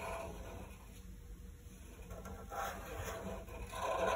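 Felt-tip permanent markers drawing on paper: a few faint scratchy strokes, the last one near the end.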